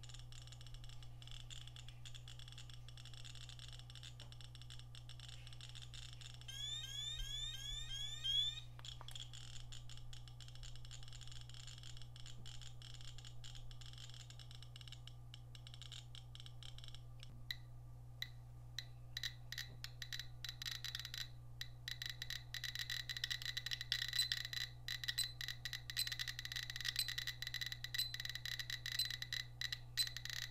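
Radiation meters (a Radiacode 102 and a GQ GMC-500+) clicking with each detected count from tyuyamunite uranium ore, the clicks coming faster and louder in the second half as the count rate climbs toward 1,500 counts per minute. A brief run of rapid chirps sounds about a quarter of the way in, and a repeating high beep joins the clicks near the end, as the GQ reads a high radiation level.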